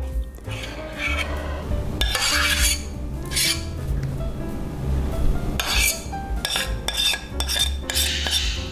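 A spoon scraping thick cream filling out of a saucepan in several short strokes, over soft background music.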